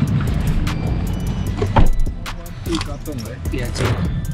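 Rustling and knocking as a bag is loaded into a taxi's back seat over the low rumble of the car, with one heavy thump a little under two seconds in. Background music plays along.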